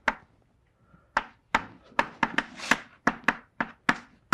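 Chalk writing on a blackboard: a run of sharp taps and short scratchy strokes, about three a second, starting about a second in after a brief quiet.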